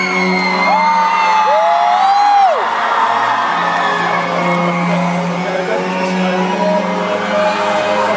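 Live concert music over the arena PA, a held, steady chord opening the next song, with the crowd cheering. A few single high screams or whoops from fans close by rise and fall over it, one loud one in the first few seconds.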